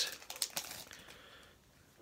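Faint rustling of a trading card in a plastic sleeve being handled, with a few small clicks, dying away to near silence near the end.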